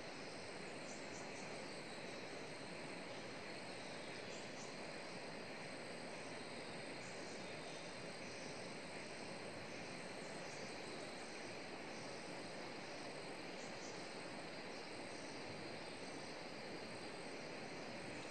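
Faint, steady outdoor ambience: insects chirping in thin high tones over an even background hiss.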